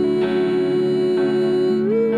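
A woman singing one long held note over keyboard and acoustic guitar accompaniment, the note rising in pitch near the end.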